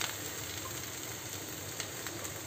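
Chathila (spiny gourd) pieces and onion slices frying in mustard oil in a kadhai: a steady, even sizzle, with a faint tap near the end.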